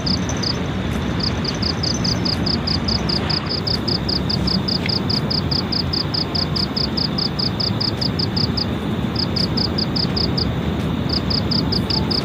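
Night insects chirping in a high, fast, regular pulse, about five chirps a second, pausing briefly a few times, over a steady rushing background noise.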